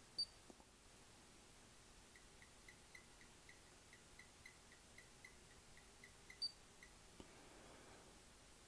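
Near silence from electronic amplifier test gear during a dyno power run. A short high beep sounds at the start and another about six seconds later. Between them comes a steady run of faint short chirps, about three or four a second.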